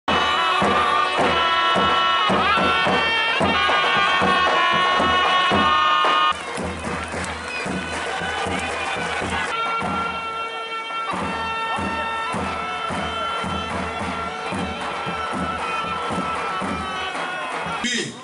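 Davul and zurna music: the shrill reed melody of the zurna is held over regular beats of the big davul drum. The sound drops in level and changes abruptly about six seconds in, then the same kind of playing carries on.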